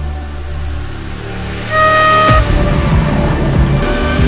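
Soundtrack music with a low drone. Near the middle a short held tone sounds, and then a GT3 race car's engine comes in loud, revving as the car drives past.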